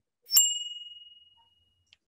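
A single bright bell-like ding sound effect. It is struck about a third of a second in, and its one high tone rings out and fades over about a second and a half.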